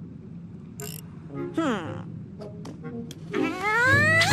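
Squeaky cartoon Vegimal gibberish voices: a short falling squeak about one and a half seconds in, a few small clicks, and a long rising squeak near the end, over faint background music.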